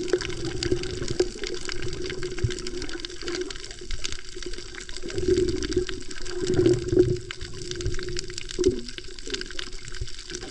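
Underwater sound from a camera held beneath the surface over a coral reef: muffled water movement that swells louder in the middle, over a constant crackle of faint clicks.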